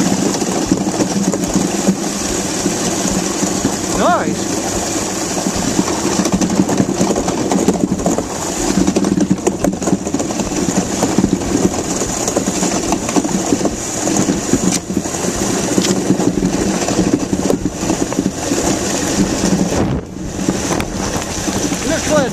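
Runners of a DN ice yacht skating fast over clear lake ice: a steady low hum over a continuous hiss, mixed with wind on the microphone.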